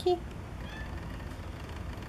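A tabby cat's short meow right at the start, then quiet room noise.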